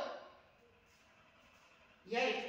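The last of a woman's spoken command trails off in the first half second, then near silence: room tone.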